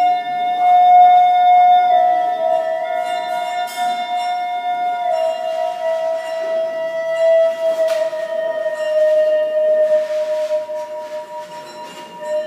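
Live ambient music: a wind instrument holds one long note that slowly sinks in pitch and fades near the end, over steady ringing bell-like tones.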